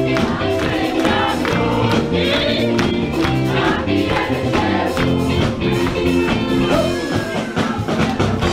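A wedding dance band playing lively music with a steady beat, with many voices singing along.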